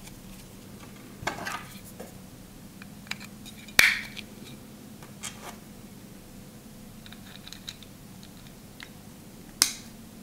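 Hands working on an ASUS ROG Strix Arion M2 NVMe SSD enclosure with a small screwdriver make scattered small clicks, taps and scrapes of metal and plastic parts. The sharpest clack comes about four seconds in, and another comes near the end.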